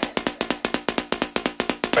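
Techno track in a stripped-back passage: a dry percussion hit repeating rapidly and evenly, about eight or nine times a second, with little bass and no vocal.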